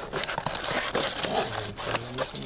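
Foil trading-card pack wrappers crinkling, with cardboard scraping, as a stack of packs is pulled out of an opened card box; a dense run of fine crackles.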